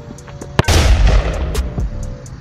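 A soccer ball kicked with a sharp thump about half a second in, followed at once by a loud, hissing, explosion-like burst that fades over about a second. Background music plays throughout.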